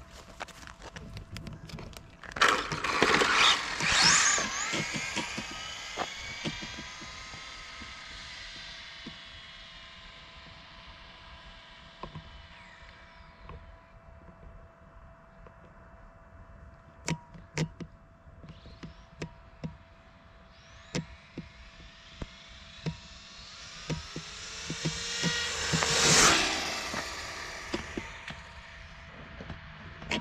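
Radio-controlled Tamiya TT-02 touring car's electric motor and drivetrain whining. It launches hard about two seconds in, the whine climbing in pitch and then fading as the car speeds away. Near the end the car comes back toward the microphone, and its whine swells to the loudest point before dying away.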